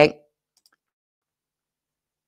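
The end of a spoken word, then near silence broken by a couple of faint computer-mouse clicks.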